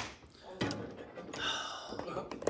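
A sharp click, then a man's audible breath, a breathy exhale or gasp, near the end, as a phone on a stand is handled.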